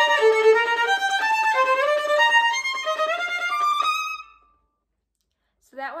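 Violin playing a fast passage as a bow-repetition practice exercise, each note bowed three times in quick strokes, the line stepping upward in pitch. The playing stops about four seconds in.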